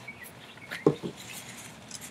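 A plastic motor-oil bottle being handled while oil is topped up in a lawn mower's fill tube, with one sharp knock just under a second in and faint rustling and small clicks around it.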